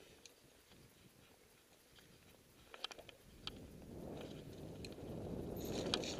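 Mountain bike rolling on a dirt trail: a few faint clicks and rattles, then a low rumble of tyres on dirt and air noise that grows steadily louder from about four seconds in.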